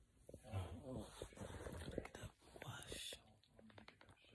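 Faint whispered voices close to the microphone, in short stretches with small clicks between them.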